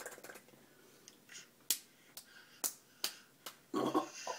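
A run of five sharp, light clicks, about two a second, in a quiet room, with a voice starting just before the end.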